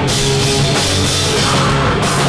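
A live heavy rock band playing loud: electric guitars and a drum kit, with cymbals crashing throughout.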